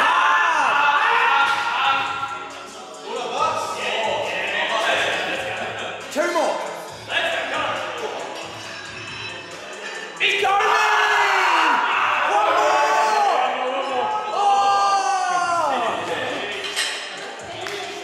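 Men shouting encouragement at a lifter through the last reps of a pendulum squat set, in loud stretches with short breaks, with music playing underneath.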